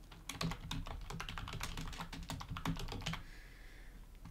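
Typing on a computer keyboard: a quick run of keystrokes that stops about three seconds in.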